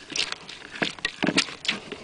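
A bare hand squishing Chardonnay grape clusters to pulp in a plastic pitcher: irregular wet squelches and small crackles as the berries burst.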